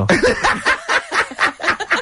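People laughing in a run of short, quick chuckles.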